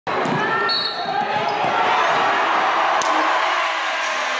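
Basketballs bouncing on a gym floor under a steady murmur of a crowd in a large hall, with a few short high squeaks in the first second and a half.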